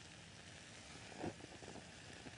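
Very quiet room tone: a faint steady hiss, with one brief soft sound a little past halfway through.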